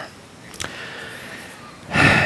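Paper being handled at a lectern: a soft click, faint rustling, then a louder rustle near the end.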